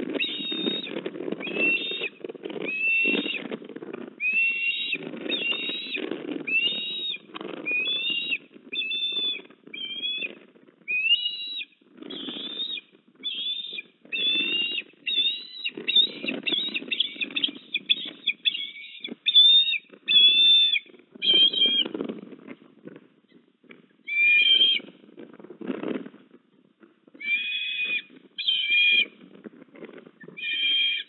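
Eastern ospreys at the nest giving a long series of short, high, whistled chirps, several a second, for about twenty seconds, then in shorter bouts with pauses near the end. A low rumbling noise comes and goes underneath.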